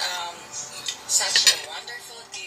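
Spoon and fork clinking and scraping against a dinner plate while eating, with a few sharp clinks in the second half.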